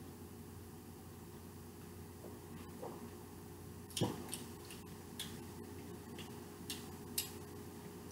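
A drinking glass set down on a tabletop with a single knock about four seconds in, over a quiet room with a faint steady hum. A few faint small clicks come before and after it.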